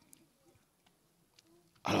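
A pause in a man's speech: near silence with faint room noise and a couple of tiny clicks, then his voice comes back loudly just before the end.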